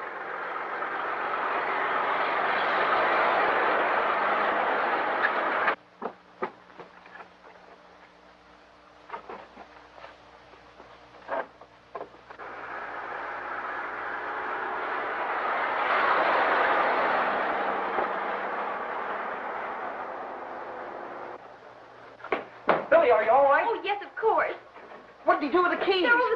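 Old open touring car driving past on an early film soundtrack: a rushing engine-and-road noise that swells and cuts off suddenly about six seconds in, followed by scattered knocks and a second long rushing swell. Near the end, men's voices shout over scuffling.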